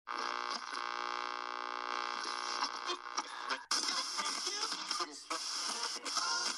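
Intro audio: a held, pitched chord with many overtones sounds steadily for about three and a half seconds and cuts off abruptly. It is followed by a busier, noisier passage with voice-like fragments mixed in.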